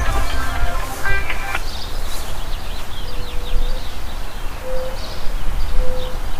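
Outdoor yard ambience: a low rumble of wind on the microphone, with faint bird chirps and a few short, steady low calls from about three seconds in.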